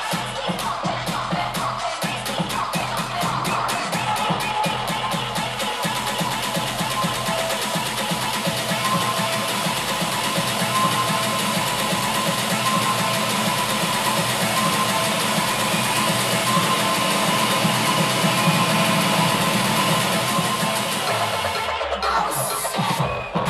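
Electronic dance music from a live DJ set, playing loud on a club sound system. A fast, quickening roll of hits over the first few seconds merges into a dense sustained wash that slowly gets louder, with little deep bass, then breaks off briefly just before the end.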